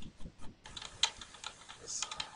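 Computer keyboard typing: a run of irregular key clicks, the sharpest about a second in.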